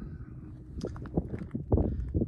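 A few soft, irregular thumps over a low rumble.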